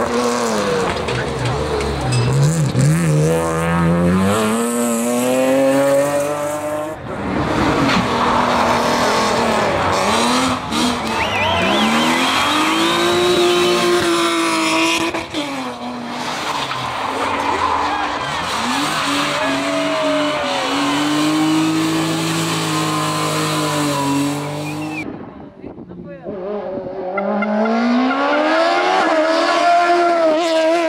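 Hillclimb race cars at full throttle, one pass after another, their engines revving up and dropping through gear changes, with tyre squeal. The sound changes abruptly twice, about a quarter of the way in and again near the end, as a different car takes over.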